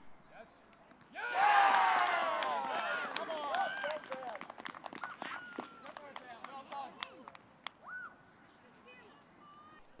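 Cheering and shouting from many voices as a goal goes in. It bursts out about a second in, loudest at first, and dies away over a few seconds into scattered shouts.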